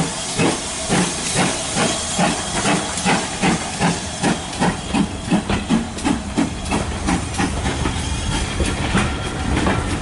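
Steam locomotive pulling a train away from a station, its exhaust chuffing in an even beat of about three a second over a steady hiss of steam. Near the end the beats fade and the coaches' wheels rolling over the rails take over.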